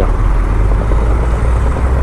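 KTM Duke 390's single-cylinder engine running at low speed in slow traffic, a steady low rumble, mixed with road and traffic noise.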